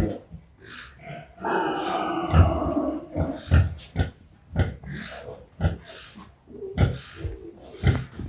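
Pigs grunting while a boar is mounted on a sow during mating: one long rough call about one and a half seconds in, then short low grunts about twice a second.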